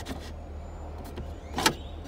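A single sharp click about one and a half seconds in as the loose convertible-top trim flap of a 6th-gen Camaro is pushed and moved by hand. The flap is loose because an iron piece in its linkage has broken off, so it no longer pops back into place. A steady low hum runs underneath.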